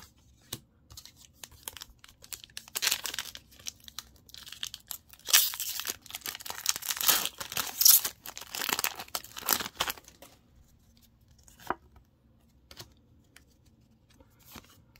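Foil booster pack wrapper being torn open and crinkled by hand, a run of crackling rips over several seconds. A few light clicks follow as the cards are handled.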